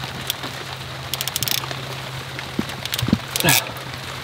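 Steady rain falling on wet surfaces, with a low steady hum beneath. Sharp clicks from a hand tool working on the boiler's PEX and brass fittings come in a quick run about a second in and a few more near the end.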